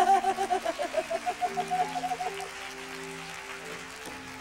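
A woman's long laugh into a microphone, a quick run of pulsed 'ha-ha' sounds that fades out about two and a half seconds in. Under and after it, soft sustained music chords hold steady.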